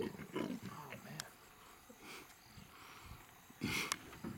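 Leopard growl from a mating pair, trailing off in the first half second. A quieter stretch follows, then a short, louder sound near the end.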